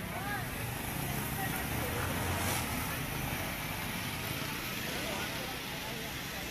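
Steady street traffic noise with faint, indistinct voices.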